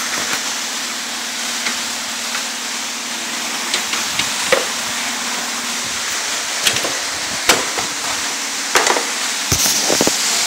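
Handling noise from a handheld camera: a few scattered knocks and clicks over a steady hiss.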